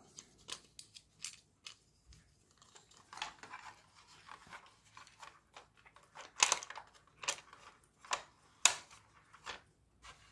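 Hard plastic toy-car body parts being handled and fitted together: an irregular run of short clicks and scrapes, the loudest about six and a half and eight and a half seconds in.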